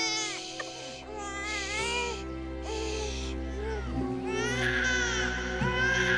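A newborn baby crying in repeated wavering wails that grow louder near the end, over a soft music score of sustained low notes.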